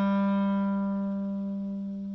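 Clarinet holding one long low note, steady in pitch, slowly fading away.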